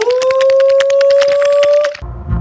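A loud steady electronic tone with crackling clicks, from a horror film's soundtrack. It slides up in pitch at the very start, holds for about two seconds while edging slightly higher, and cuts off abruptly.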